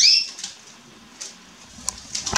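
A canary's single sharp chirp at the start, a quick falling call note, followed by a few faint clicks as the birds move about on the branches.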